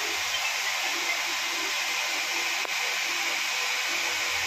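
A steady, even hiss, with a momentary drop about two and a half seconds in.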